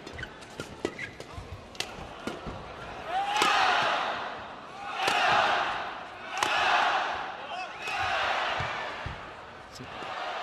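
Racket strokes cracking a shuttlecock back and forth in a fast doubles badminton rally. Over it an arena crowd cheers in four rising and falling swells, starting about three seconds in.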